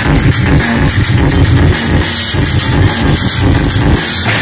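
Live electronic music from a Eurorack modular synthesizer played together with a live drum kit, with a steady run of repeated hits.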